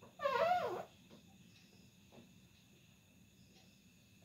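A short, high-pitched, wavering animal call, under a second long, near the start.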